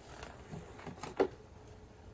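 Faint handling of a picture card being fed into a children's talking card reader: a few light taps and clicks, the loudest a little past a second in.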